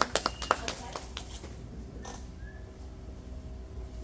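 A few people clapping briefly after a board break, the claps thinning out about a second in, leaving quiet room tone.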